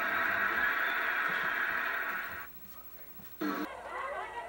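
Television sound played through the set's speaker: a steady, loud, hissy passage that cuts off about two and a half seconds in. After about a second of near quiet, a short loud burst and the sound of another programme begin: the channel being changed.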